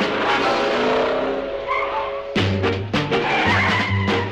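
A car driving in with its tyres squealing, its pitch sliding. About halfway through, background music with a steady bass line comes in.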